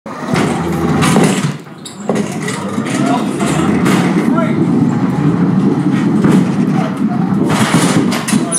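Muffled, indistinct voices over a steady low rumble, with a short dip in level about one and a half seconds in.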